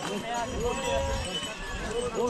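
Several people talking nearby on a busy mountain trail, with pack mules and ponies walking past, hooves on the wet stone path. A low rumble comes in about half a second in.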